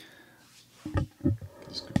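Handling noise from a microphone being picked up: a few short, dull bumps about a second in, with a faint murmured voice and a sharp click near the end.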